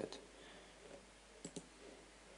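Computer mouse clicking twice in quick succession about one and a half seconds in, over faint hiss.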